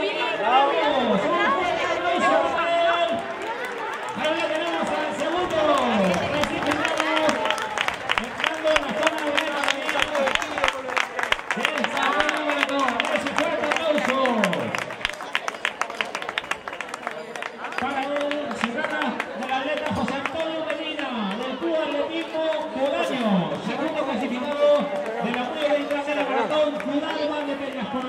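A man's voice speaking continuously and excitedly, an announcer commenting on runners as they finish. Spectators clap through the middle part, from about seven to fifteen seconds in.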